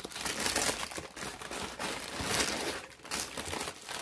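Wrapping crinkling and rustling in bursts as a sneaker box is unpacked, the packing being pulled back from the shoes.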